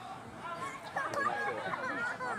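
Several voices at a rugby match calling out and talking over one another, growing louder about a second in.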